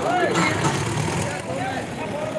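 Tractor engines running hard as two tractors chained back to back pull against each other in a tug-of-war. An announcer's voice is heard briefly at the start and again near the end.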